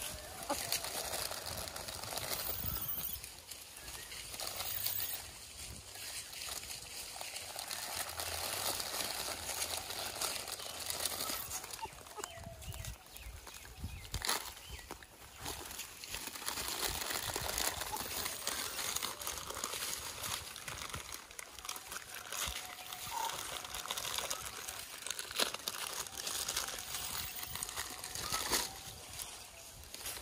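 Plastic snack packet crinkling and rustling while gray langurs crowd in and are hand-fed from it, with scattered small clicks and scuffles throughout.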